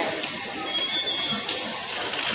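Ambient noise of a busy indoor metro station concourse: a steady wash of noise with faint voices, a brief high tone partway through, and a click near the end.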